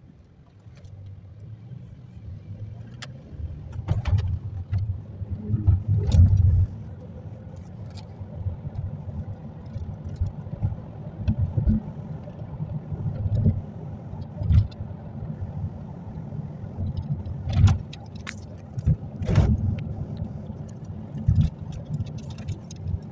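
Road and engine noise heard inside a moving car: a low rumble that grows about a second in as the car gets under way, broken by irregular knocks and thumps from bumps and cabin rattles, the loudest a few seconds in and again near the end.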